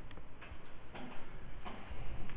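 A few faint, irregularly spaced clicks over low room rumble.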